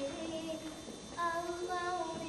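A young girl singing held notes in a stage musical number, her voice louder from a little past halfway.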